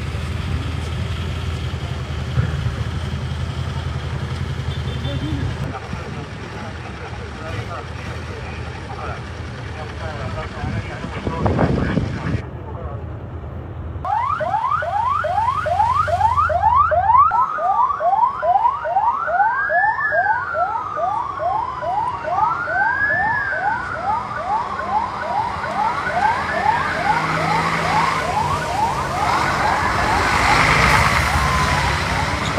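Vehicle engines idling as a low rumble. After a cut about halfway through, a police escort siren starts with a rapid yelp, then about four seconds later switches to a slow wail that rises and falls roughly every three seconds.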